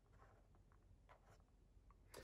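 Near silence, with a few faint light ticks and rustles from fingers handling a cardboard perfume box.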